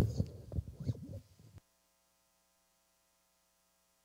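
Handling noise from a handheld microphone: low bumps and rubbing for about a second and a half, loudest at the very start. The sound then cuts off abruptly to dead silence.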